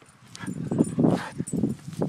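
Brittany Spaniel giving a low, rough play growl while hanging on to a stick that someone is trying to take from her.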